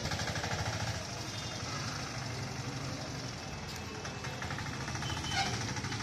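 Street traffic with a motor vehicle's engine running close by, a rapid, even pulsing throughout.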